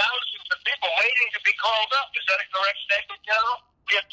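Speech heard over a telephone line: a voice talking almost without pause, thin and narrow-sounding with no low end.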